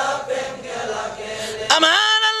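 Many voices chanting the refrain of a Bengali devotional song in praise of the Prophet together. Near the end a single male voice comes in, rising in pitch and then holding a sung note.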